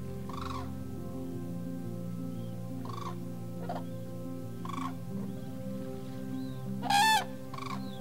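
Short calls of common cranes, about six of them, the loudest a ringing call near the end, over background music of sustained low tones.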